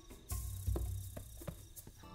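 Crickets chirping in a night-time film soundtrack, over soft music, with a low rumble coming in about a third of a second in.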